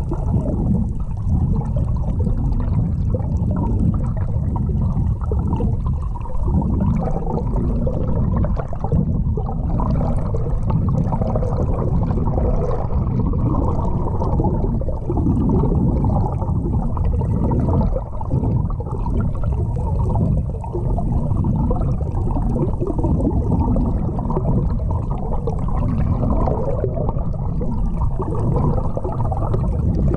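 Underwater sound picked up by a GoPro camera held below the surface: a steady, muffled rush and gurgle of water moving against the camera housing.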